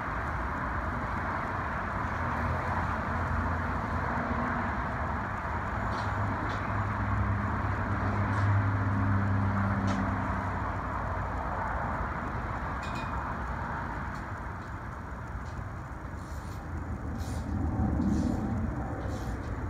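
Steady outdoor background rumble like distant road traffic, with a low engine-like hum that swells about halfway through and then fades. A few faint clicks come near the end.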